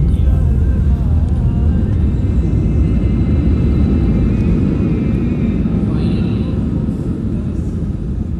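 Airliner cabin noise during the landing roll: a heavy, steady rumble of wheels on the runway and engines that eases slightly toward the end as the plane slows.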